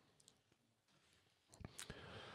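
Near silence: room tone, with a few faint mouth clicks close to the microphone near the end.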